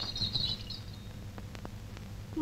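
Steady low hum and a few faint clicks of an old film soundtrack, with faint high chirping in the first half second or so that then fades out.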